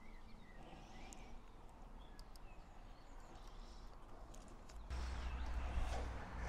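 Quiet outdoor ambience with a few light clicks from small bike parts being handled, and faint bird-like chirps near the start. About five seconds in, a low rumble comes in and grows louder.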